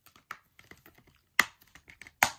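Plastic Blu-ray cases being handled: scattered light clicks and taps, with one sharper click about one and a half seconds in.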